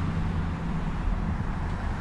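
Steady outdoor background noise: a low rumble and hiss with a faint hum, with no distinct event standing out.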